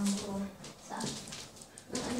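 A person's voice: a drawn-out vocal sound held on one pitch, ending about half a second in, then quieter sounds.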